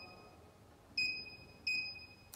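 Short high electronic key-press beeps from the RT-719 bottle cap torque tester's control panel, one about a second in and another near the end, as a button is pressed to cycle the torque unit through kgf, lbf and newton meter.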